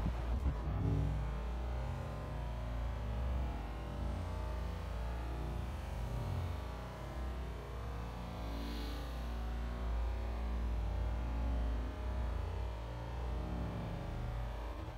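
Wind blowing over a phone's microphone: a steady low rumble with a faint hiss above it.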